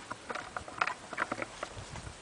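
Footsteps crunching and rustling through grass and undergrowth, an irregular run of short crackles.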